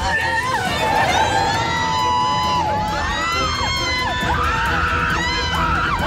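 Several women screaming in panic, long high wavering cries overlapping one another, in a car careering out of control with failed brakes, over dramatic background music.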